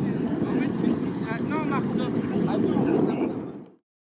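Steady rumble of wind on the microphone and a motorboat towing inflatable tubes across water, with faint distant shouts from the riders. The sound fades out quickly near the end.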